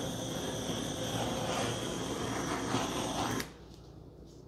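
Small handheld butane torch burning with a steady hiss as its flame is passed over wet acrylic paint to pop air bubbles; the flame is shut off about three and a half seconds in.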